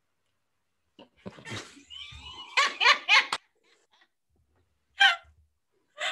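Two people laughing, a man and a woman. The laughter starts about a second in and breaks off past the middle, with one more short laugh near the end.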